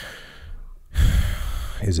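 A man's breath close to a microphone: a drawn-in breath, then about a second in a louder, heavy exhale like a sigh, the loudest part, just before he speaks again.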